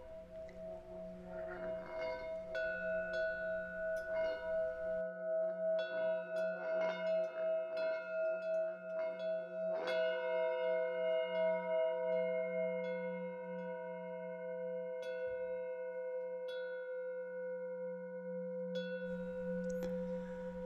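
Soft ambient background music of singing-bowl tones: long ringing tones that waver in a slow pulse as they sustain, with light chime strikes scattered over them. A new set of struck tones comes in about halfway through.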